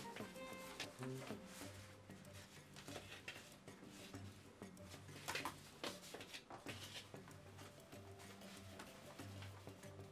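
Faint background music with soft, sustained notes, and a few light clicks and rustles of hands handling paper and fabric on a table.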